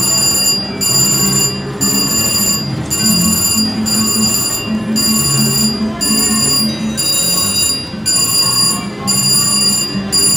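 VGT Lucky Ducky mechanical-reel slot machine spinning its reels, its electronic chimes and tones repeating in a pattern that breaks about once a second.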